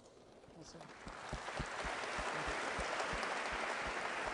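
Audience applause, starting faintly and building over the first second, then holding steady.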